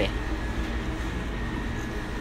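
Steady low hum of restaurant kitchen machinery at the broiler station, with a thin, steady high whine above it.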